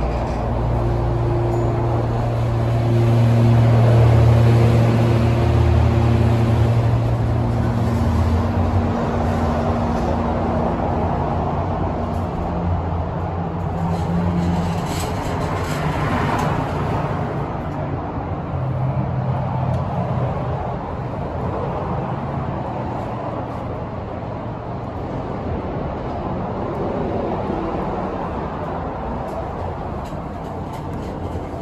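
Montgomery hydraulic elevator running, a steady low hum for about the first eight seconds. The car then stops and its doors open about halfway through. Steady freeway traffic noise is heard throughout.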